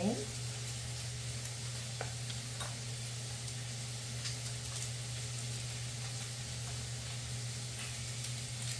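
Polish sausage frying in a tablespoon of bacon grease in a pan: a steady sizzle with scattered small crackles.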